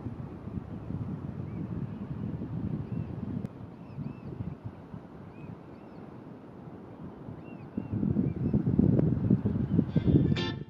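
Wind buffeting the microphone, with short arched chirps from a flock of birds repeating over it. The wind gets louder near the end.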